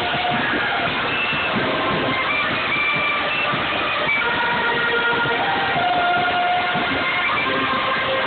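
A large marching band of brass and woodwinds (trumpets, trombones, sousaphones, saxophones, clarinets and flutes) playing together, with many notes held at once.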